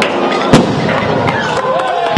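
Fireworks going off: one sharp bang about half a second in, the loudest sound, with a smaller crack at the start and a few light cracks, over crowd voices.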